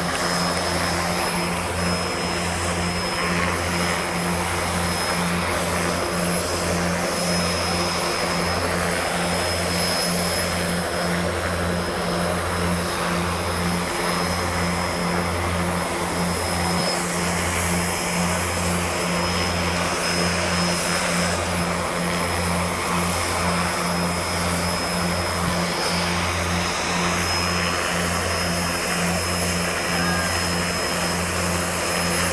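Helicopters running on the ground, turbines and rotors going steadily. A low, evenly pulsing rotor beat sits under a thin high turbine whine.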